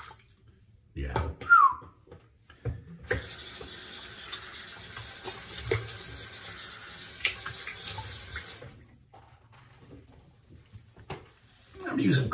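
Cold tap water running into a sink for about six seconds, starting about three seconds in and shutting off abruptly near nine, with small splashes as the face is rinsed.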